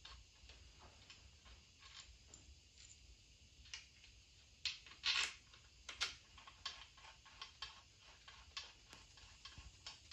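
Small metal clicks and taps as parts are handled and fitted into the main bearing area of an engine block, several a second, with a few louder clinks about five seconds in.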